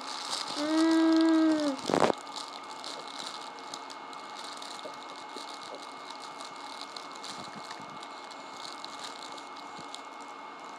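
A baby's held, even-pitched vocal sound, like a hum, lasting about a second just after the start, then a sharp knock. After that, soft steady rustling and light rattling as a fabric baby book is chewed and handled.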